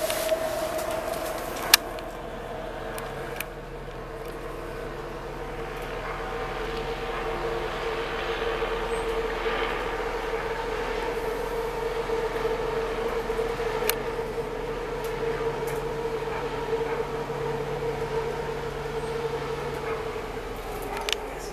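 A steady mechanical hum carrying a held mid-pitched tone, dipping a little early on and swelling slowly after. It is broken by a sharp click a couple of seconds in and another about fourteen seconds in.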